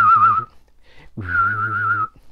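A man whistling a sci-fi UFO sound: two long, warbling high notes with a quick wobble, the second slightly higher, with a low hum under them.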